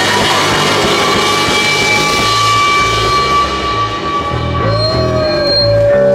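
A live rock trio playing loudly: distorted electric guitar, electric bass and drum kit. About two-thirds of the way through, the drums and cymbals fall away, leaving held electric guitar notes, one bent upward in pitch, over a pulsing bass line.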